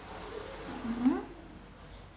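A single short rising vocal call, about half a second long and a second in, from a person or an animal.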